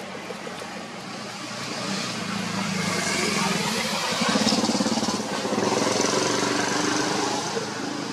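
A motor vehicle, likely a motorbike, passes. Its engine and road noise swell over a few seconds, loudest around the middle, then ease off near the end.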